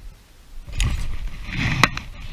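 Rustling and handling noise as a fly rod is swept up to strike a fish, starting under a second in, with a sharp click near the end.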